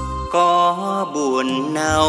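Vietnamese bolero song with band accompaniment; a male singer's voice comes in about a third of a second in, holding and sliding between notes.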